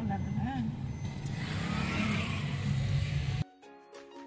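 Steady road and engine rumble inside a moving car's cabin, after a short trailing bit of a woman's voice. Near the end it cuts off suddenly to soft background music.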